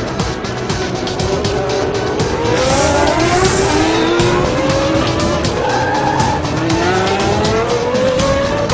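Cartoon race car engine sound effect revving up, its pitch climbing in several successive rises, with background music playing under it.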